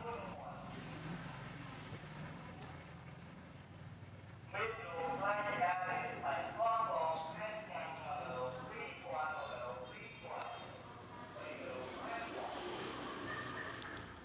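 A person's voice talking, loudest from about four and a half seconds in, over a faint steady low hum.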